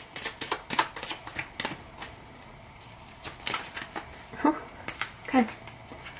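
A tarot deck being shuffled by hand: a quick run of card snaps through the first couple of seconds, then a few more about three and a half seconds in. Two short voice sounds come near the end.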